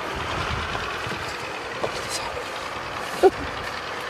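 A man's short sobbing cry about three seconds in, over a steady background hiss and low rumble.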